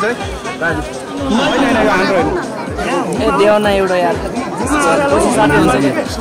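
Several people talking at once over background music with a steady low beat, a few beats a second.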